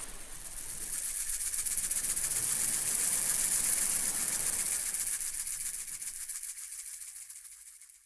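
Asalato (kashaka) shaken in a fast, continuous rattle of its seeds, building up to a peak about three seconds in and then fading away.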